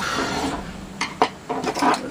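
A small screwdriver scraping against the charge controller's case, followed by a few sharp clicks and knocks as it is handled.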